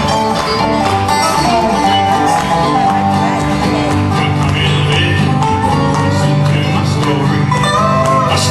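A live bluegrass band plays an instrumental break with banjo, acoustic guitar, mandolin and upright bass, in quick plucked-string picking over a steady bass.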